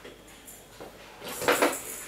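Spoon scraping up food in a small feeding bowl: one short scrape about a second and a half in, after a quiet moment.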